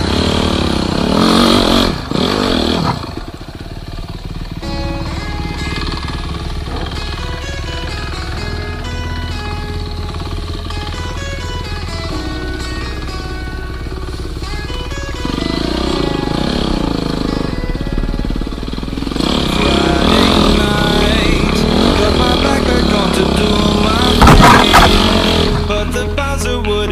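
Background music, with a Husqvarna enduro motorcycle's engine revving up and down beneath it. The engine is heard most near the start and through the second half, loudest shortly before the end.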